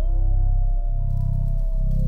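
Trailer score music: a deep drone that swells and dips about once a second, under a single held high note that bends up at the start and then holds.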